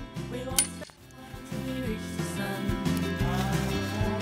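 A single sharp metallic clink about half a second in, a hammer striking the back of a hatchet to split kindling, with a short ring. Background music runs under it and carries on after a brief dip near the one-second mark.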